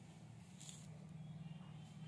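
Near silence: a low steady hum of room tone, with one faint brief hiss about two-thirds of a second in.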